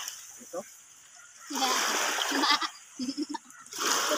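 Water splashing as a fishing net is pulled in by hand over the side of a small boat: one longer splashing stretch in the middle and another near the end, with brief short voices in between.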